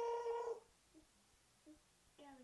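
A person's voice holding one steady high note that cuts off about half a second in, followed by near silence with a couple of faint ticks.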